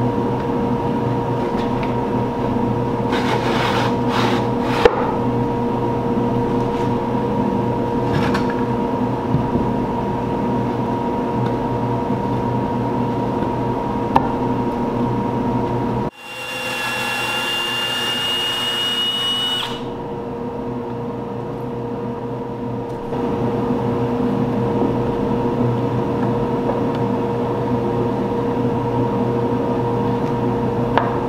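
Steady hum of an electric motor running in a workshop, with a few sharp knocks of wood being handled as a plywood drawer bottom is fitted into a dovetailed drawer box. Just past halfway the hum gives way to a higher whine for a few seconds that cuts off suddenly, then a quieter stretch before the hum returns.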